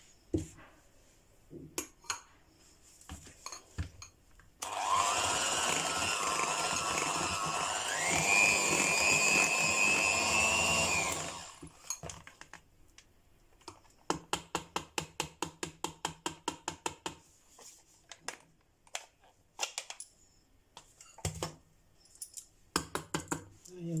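Electric hand mixer beating cake batter for about seven seconds, its motor whine stepping up in pitch partway through as the speed is raised, then switching off. A run of quick light taps follows a few seconds later.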